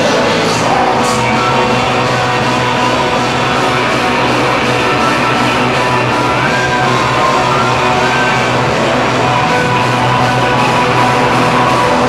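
Electric guitar played loud through an amplifier in a solo rock performance: a dense, sustained wall of guitar sound that goes on without a break.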